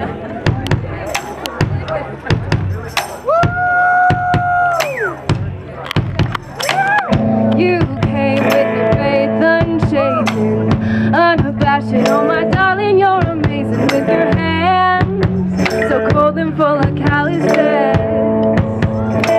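Live band playing a song: drum-kit beats and cymbal hits throughout, with electric guitar and a female lead vocal. After a long held note near the start, the full band comes in with steady chords about seven seconds in.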